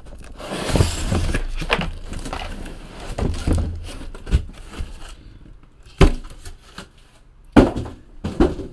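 Cardboard trading-card hobby boxes being handled and set down on a tabletop: rustling and scraping, with two sharp knocks near the end as boxes are put down.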